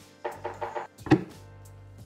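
Quiet background music with a few light knocks, then one sharp tap just after a second in: a teaspoon and blender jar being handled.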